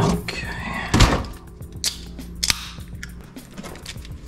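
Refrigerator door and drink cans being handled: a few sharp knocks and clunks, the loudest about a second in and another about two and a half seconds in, over a steady low hum with music in the background.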